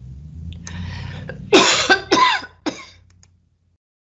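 A person clearing their throat and coughing: a rough breath, then three short, loud bursts about a second and a half in.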